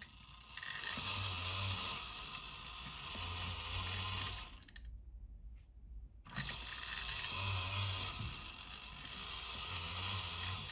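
Spring-driven clockwork walking mechanism of a 1950s Alps Mr. Robot tin toy robot running as it walks, just after being wound. It stops for about a second and a half near the middle, then runs again.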